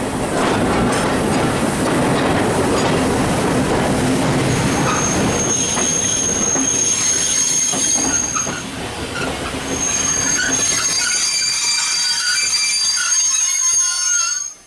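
Railway coach wheels rolling on the track, heard from aboard the moving train: a rumble with clicking from the wheels, then a high steady wheel squeal from about four seconds in. The squeal dips briefly a little after eight seconds and returns.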